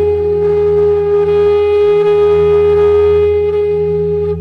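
Background flute music holding one long note over a steady low drone, the note fading near the end.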